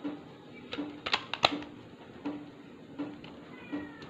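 Clear plastic cassette cases clicking and clattering as they are handled, loudest in a quick run of clicks about a second in. Underneath is background music with a slow, even beat.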